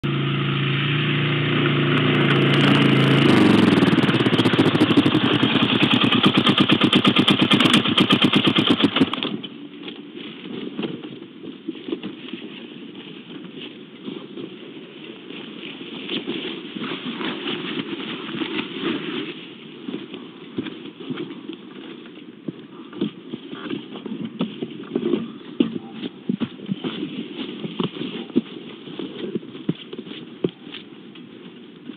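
A motor engine running, rising in pitch a couple of seconds in, then cutting off abruptly about nine seconds in. After that come quieter, irregular clicks and rustling.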